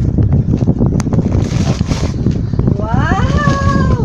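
A toddler's high, drawn-out vocal call near the end, rising in pitch and then held for about a second. Before it come plastic wrapping crinkling and a sharp click, over steady low handling rumble on the microphone.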